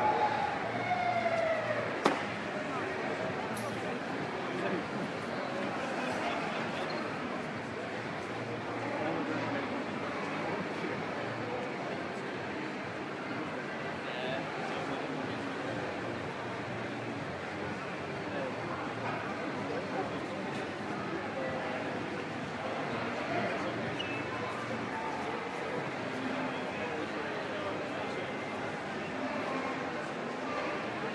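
Indistinct voices and general murmur in a large sports hall, clearest in the first couple of seconds, with one sharp knock about two seconds in.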